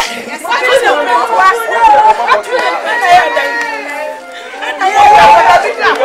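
Several people talking and calling out over one another in Twi, loud and overlapping, with a woman crying out in distress among them. Music plays faintly underneath.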